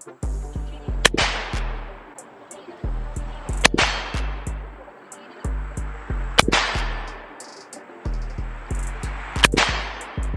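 Four single shots from an AR-15-style rifle firing 5.56 ammunition, spaced about two and a half to three seconds apart, each with a short ringing tail. A music beat with deep bass runs underneath.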